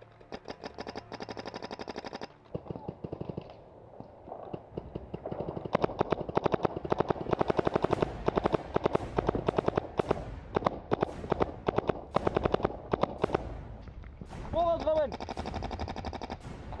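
Paintball markers firing, a Tippmann 98 Custom Pro among them. A quick string of light shots comes in the first two seconds, then from about five seconds in a long run of close, sharp shots several a second. A short shout comes near the end.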